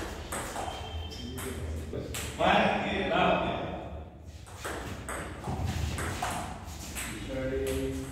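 Table tennis rally: the celluloid ball clicks sharply off paddles and table in quick succession.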